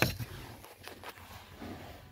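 Handling noise from a plastic brake light switch being worked under a car's dashboard: a sharp click at the start, then a few faint knocks and rustling.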